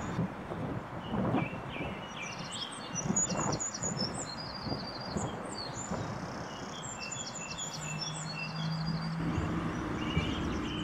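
Songbirds singing in repeated high chirps and trills over steady background noise. A low steady hum comes in near the end.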